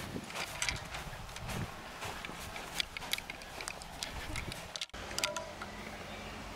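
Golf clubs carried by hand, clicking and knocking together in short, irregular ticks as the golfer walks on the fairway grass, over a low outdoor rumble.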